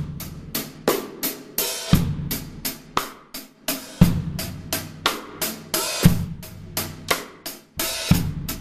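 Drum kit playing a slow groove: hi-hat strokes about three a second, with a bass drum hit about every two seconds and snare between. The hi-hat is being opened by lifting the left foot off the pedal, which the drummer says makes it sound strange, without the rustling wash of a properly half-open hi-hat.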